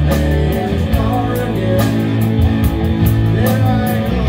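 Live rock band playing an instrumental passage with no singing: electric guitars to the fore over bass and a drum kit, with cymbal strokes at a steady beat.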